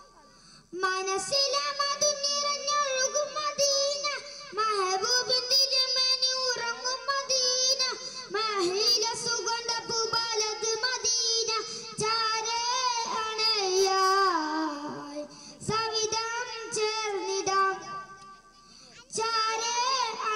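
A boy singing solo through a microphone and PA, with long wavering, ornamented notes. There are short breath pauses about a second in and again near the end.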